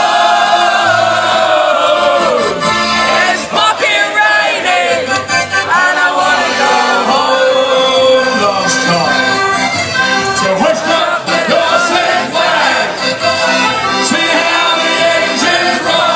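Live band music with singing and accordion, played loud and steady.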